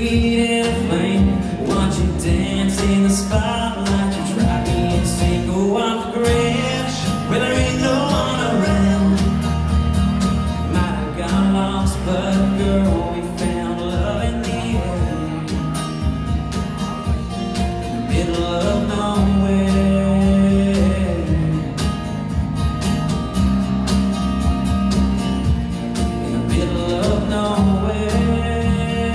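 Live acoustic country song played by a small band on acoustic guitar, electric guitar and cajon, with a man singing at times.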